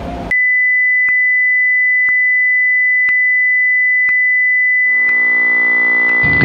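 Steady high electronic test tone, a single pure pitch switched on abruptly, with a faint tick about once a second. A buzzy lower drone joins it near the end.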